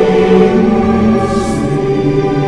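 Choir singing a slow, lullaby-like carol in long held notes, with the soft hiss of a sung 's' about one and a half seconds in.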